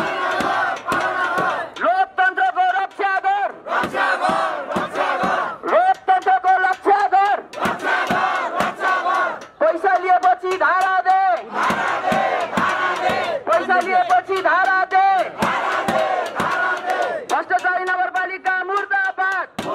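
A crowd of protesters shouting slogans together in short, repeated phrases, led by a man on a microphone.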